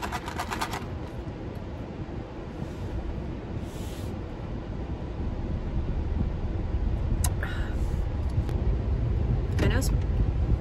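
Steady low rumble of a car heard from inside the closed cabin.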